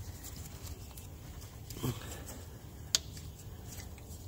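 Faint handling sounds of gloved hands working a ribbed rubber drive belt onto the engine's pulleys: light rustles and clicks, a brief squeak a little before the middle, and one sharp click about three seconds in.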